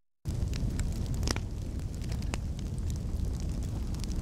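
A fire burning with a steady low roar and scattered sharp crackles, starting suddenly after a brief silence at the start.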